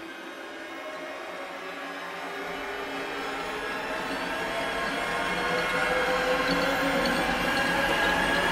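A rumbling, hissing noise with faint held tones in it, swelling steadily louder throughout: a noise build-up in the intro soundtrack.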